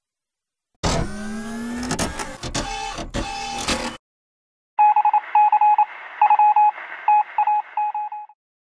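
Edited-in sound effects. First comes a loud, noisy burst with rising tones lasting about three seconds. After a short gap comes a run of short, irregular electronic beeps that sound thin and telephone-like.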